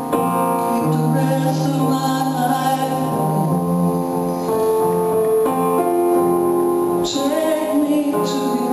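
A male singer singing live while accompanying himself on a stage piano keyboard, with long held piano notes under the voice.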